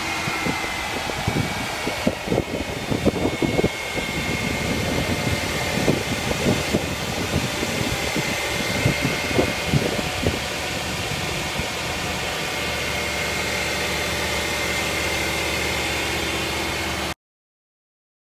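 1999 Chevy van's engine idling steadily, heard over the open engine bay, with a thin steady whine above the running noise. Irregular low thumps ride over it for the first ten seconds or so, and then it settles to a smoother hum before cutting off suddenly near the end.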